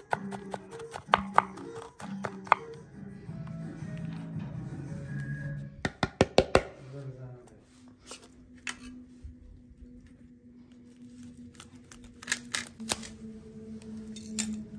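Kitchen knife chopping walnuts on a wooden cutting board: scattered sharp taps in the first few seconds, then a quick run of about four strikes some six seconds in, the loudest sounds here. Background music plays underneath.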